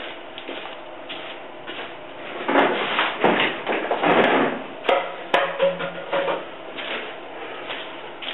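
Off-camera rustling and clattering of hollow plastic being handled, with a few sharp knocks about five seconds in: a cut-down plastic milk jug being picked out of a pile.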